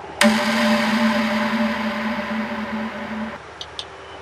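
A steady hum with hiss that starts suddenly and cuts off abruptly after about three seconds, followed by two short high chirps.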